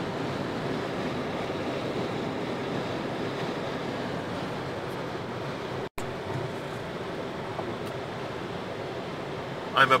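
Steady road and tyre noise in a car cabin at highway speed, broken by a sudden moment of silence about six seconds in.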